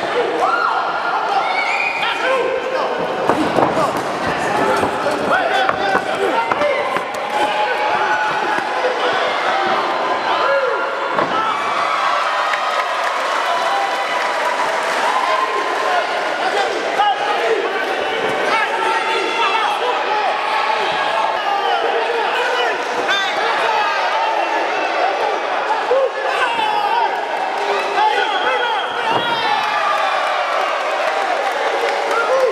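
Many voices shouting and calling out around a Muay Thai ring during a bout, with a few sharp thuds of blows landing.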